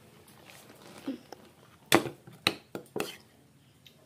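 A metal spoon clinking against plates: about four sharp clicks within a second, the first the loudest.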